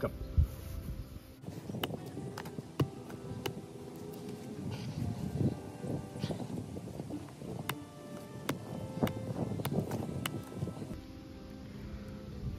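Background music, with a series of about ten sharp, irregular knocks as the tip of a Camillus Les Stroud fixed-blade survival knife is driven into the end grain of a wooden log round to test its tip strength.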